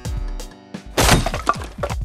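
Electronic background music with a steady kick-drum beat. About halfway through, a loud crash of shattering glass rings out for under a second over the music.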